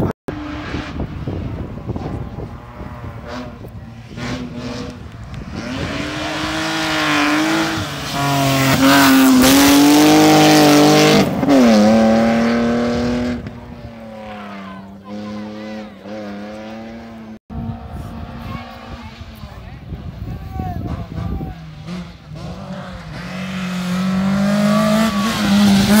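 Rally car engine revving hard through the gears, its pitch climbing and dropping back with each shift. It is loud in the middle, fades, then grows again as a Renault Mégane rally car comes up and passes close by near the end.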